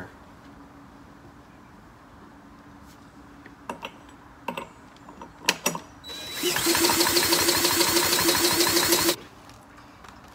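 A cordless drill spins the flywheel nut of a small generator engine for about three seconds, a loud steady whine, cranking the engine without it starting. A few sharp clicks come just before, as the drill is fitted to the nut.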